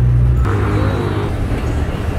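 Motor-vehicle noise from road traffic: a loud low engine hum that cuts off about half a second in, followed by a brief rushing noise.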